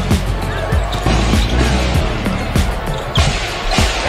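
Basketball dribbled on a hardwood court, about two to three bounces a second, over background music with a steady bass.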